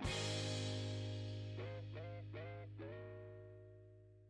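Background music: a guitar chord rings out, with a few short sliding notes in the middle, and fades away before the end.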